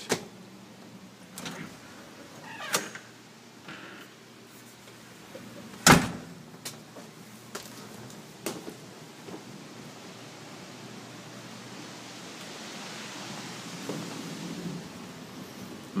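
Handling noise from a handheld camera carried through a carpeted room: scattered clicks and knocks, with one sharp knock about six seconds in and a run of lighter clicks after it, then a soft rustling hiss that swells near the end.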